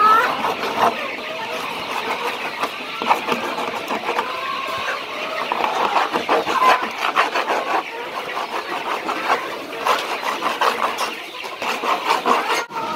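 Chickens clucking, many short calls overlapping throughout.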